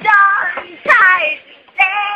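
A person yelling at the top of their voice in loud, high-pitched, sing-song cries close to the microphone: two drawn-out wails that fall in pitch, then a third starting near the end.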